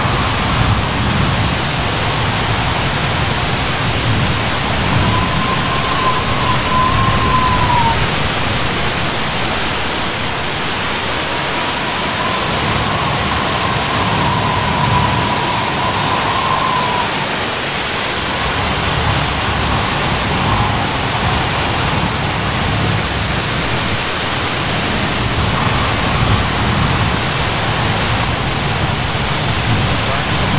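Steady rushing noise of a tall waterfall falling down a forested cliff. A faint, wavering high tone comes and goes several times over it.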